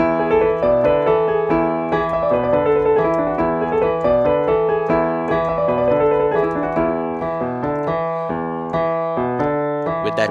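Digital piano played with both hands: a bass line in the left hand under repeated chords in the right, a rock riff demonstration.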